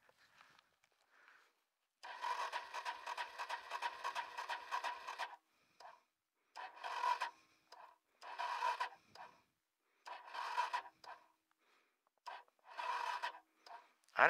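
Kawasaki KLX 140's electric starter cranking the engine in five attempts, one long and four short, with a steady whine and no firing. The engine won't catch; the owner blames a weakening battery and a flooded carburettor.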